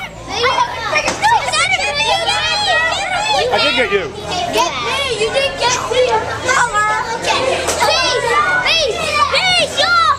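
A group of young children chattering and calling out over one another, many high voices overlapping with no pause.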